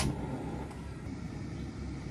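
Gas stove ignited with a sharp click at the start, then the burner flame under a wok running with a steady low rush.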